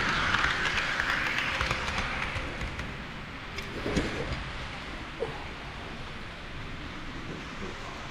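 HO-scale container wagons rolling along KATO Unitrack, their metal wheels giving a steady rushing rattle on the rails that is loudest for the first two seconds or so and then drops lower. There is a single knock about four seconds in.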